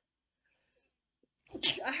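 A woman sneezes once, suddenly and loudly, about one and a half seconds in, after a stretch of near silence.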